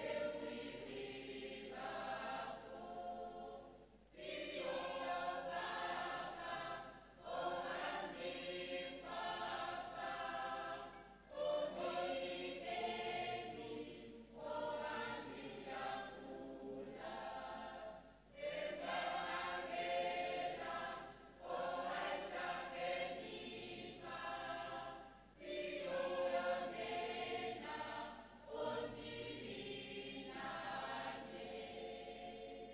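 Church choir singing, in phrases of a few seconds with short breaks between them.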